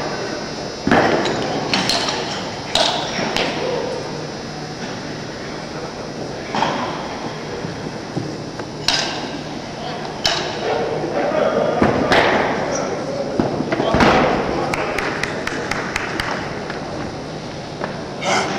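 Weightlifting competition hall ambience: indistinct voices over a steady background, broken by scattered sharp thuds and knocks, the heaviest about 14 seconds in.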